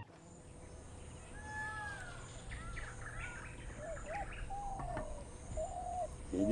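Birds calling in a quiet rural outdoor ambience: a series of short whistled chirps and slurred notes that begin about a second and a half in, over a faint steady background hum.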